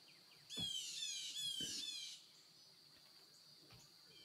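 Faint bird song: a rapid series of high, downward-sliding whistled notes for about a second and a half, over a steady faint high-pitched tone.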